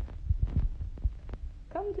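Irregular low thumps and rumble of a handheld phone being moved and rubbed close to its microphone, with a few light clicks. A voice starts near the end.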